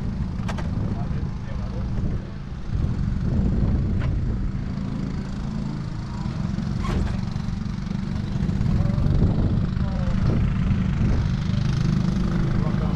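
Go-kart engines idling while lined up in the pit lane, a steady low running sound that grows a little louder in the second half, with a few sharp clicks.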